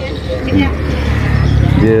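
A motor vehicle passing close by on the road: a low engine rumble with road noise that swells about half a second in and stays loud.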